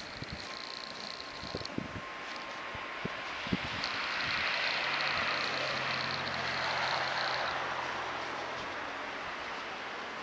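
A vehicle passing by: tyre and engine noise swells over a few seconds in the middle and then fades away. Before it come soft crunches of powdery snow being scooped off a car by gloved hands.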